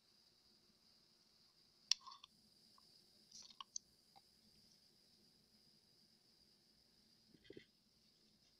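Near silence, broken by a few light clicks of a small plastic cup being handled and set down on the table, the sharpest about two seconds in.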